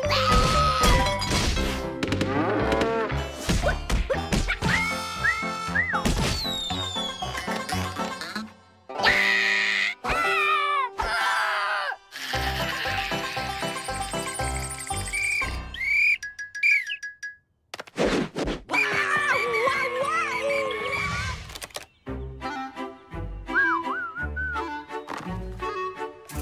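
Cartoon soundtrack: playful music mixed with slapstick sound effects. It changes abruptly every few seconds and drops out briefly a few times.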